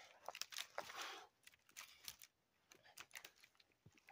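Faint scattered clicks and rustles of dry cedar branches being gathered up by hand into an armload, with a short cluster of rustling about a second in.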